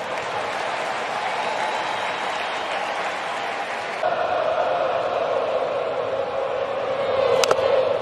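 Ballpark crowd noise, a steady din that swells louder about halfway through. Near the end comes one sharp crack of a bat as the batter fouls off a pitch.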